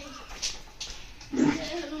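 A voice calling, with a short loud harsh cry about one and a half seconds in.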